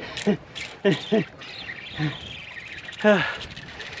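A man's short grunts and breathy half-laughs, five or so brief voiced sounds, as he strains against a big shark on a heavy spinning rod. A faint high tone glides downward in the background partway through.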